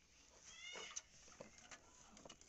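A faint, short animal call rising in pitch, followed by a few light clicks of small parts of the electric iron being handled.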